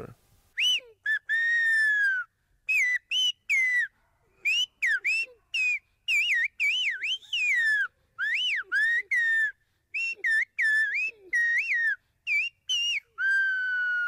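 Silbo Gomero, the whistled form of Spanish from La Gomera, whistled with fingers in the mouth. A rapid run of short whistled notes swoops up and down in pitch, with a longer, slowly falling note about a second in and again near the end. The whistles carry a spoken message: there are TV people here who know nothing about the Silbo.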